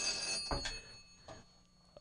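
Telephone ringing once for about a second, with a ringing tone high in pitch, followed by a faint click: an incoming call on the studio phone line.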